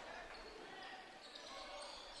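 Faint background of a basketball game in a gym, picked up by the commentator's microphone between calls: low crowd chatter and court noise as the ball is brought up the floor.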